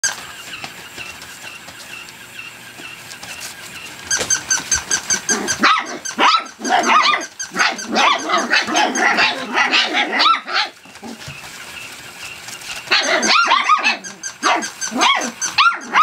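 A litter of month-old rough collie puppies barking in high yaps and small growls, several at once, in alarm at a moving toy: guarding behaviour. The barking starts about five seconds in, dies down for a couple of seconds past the middle, then starts up again.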